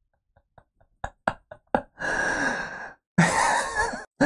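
A man laughing breathily without words: a few short catches of breath about a second in, then two long breathy exhales.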